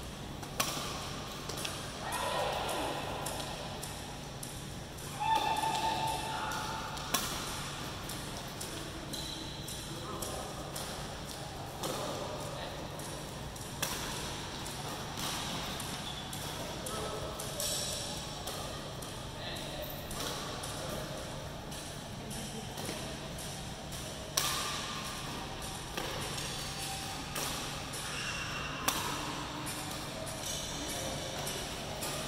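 Badminton rackets striking shuttlecocks, a sharp crack every second or two as shuttles are fed and hit back, echoing in a large hall over a steady low hum from the wall fans.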